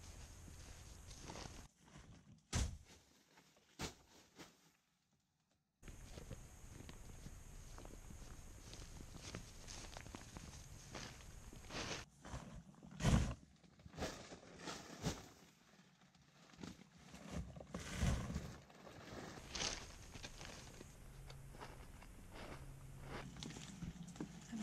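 Footsteps through dry grass, then rustling and scattered knocks as a person climbs into a nylon dome tent, over a faint steady hiss. About five seconds in, the sound cuts out completely for a moment.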